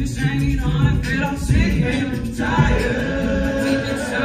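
All-male a cappella group singing into microphones: several voices in harmony over a low sung bass line, with short rhythmic vocal strokes running through it.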